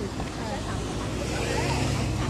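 Road traffic passing close by: a vehicle's engine hum with tyre noise, swelling about a second in.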